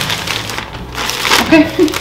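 A plastic shopping bag rustling and crinkling as groceries are pulled out of it, followed by a short laugh near the end.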